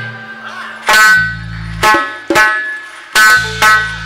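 Live music of doira frame drums with a backing band: five sharp accented hits played together, each ringing briefly, with held low bass notes in between.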